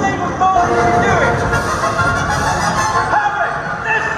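Dark ride's show soundtrack over the ride speakers: music and sound effects with voice-like sounds, loud and continuous, swelling as a projected fire blast fills the screen.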